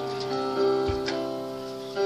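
Live church-band music with long held notes, keyboard and guitar playing, and a short low thump about a second in.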